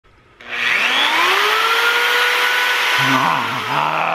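Electric drill with a large twist bit spinning up: a motor whine that rises in pitch for about a second, then runs steady. About three seconds in, a man's wordless voice joins over it.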